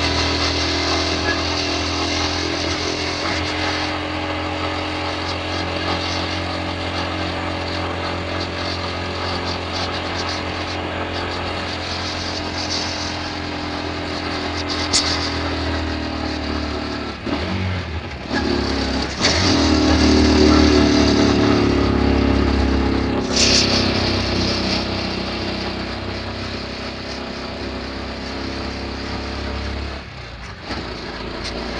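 Vehicle engine and road noise heard from inside the cabin while driving. The engine note shifts a little past halfway, then runs louder for a few seconds.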